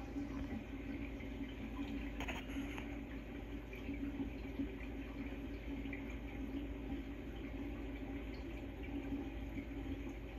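Saltwater reef aquarium's water circulating: a steady trickle and splash of moving water with a low hum under it.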